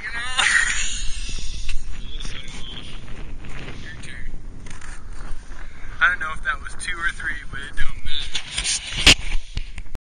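Men's voices calling out and laughing, unclear, over a low wind rumble on the microphone, with a run of short repeated laughs late on and a single sharp knock near the end.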